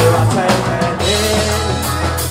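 A live rock band playing: drum kit and electric guitars, loud and continuous, with a sustained pitched note bending around the middle.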